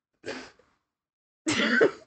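A short breathy huff, then about a second and a half in a louder burst of laughter from a person.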